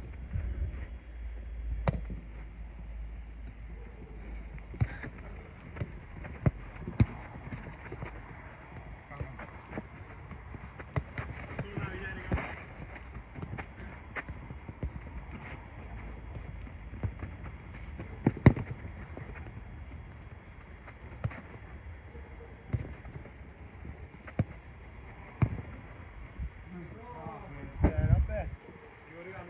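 A football kicked again and again on an artificial-turf pitch: sharp thuds every few seconds, the loudest about eighteen seconds in, with distant shouts from the players.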